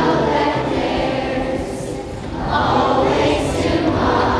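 A choir of voices singing together in sustained notes, dipping slightly about two seconds in and swelling again.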